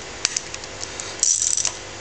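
Ratchet wrench on the jacking bolts of a cylinder-head puller plate on a Jaguar V12: two sharp metal clinks about a quarter of a second in, then a short quick run of ratchet clicks a little past one second.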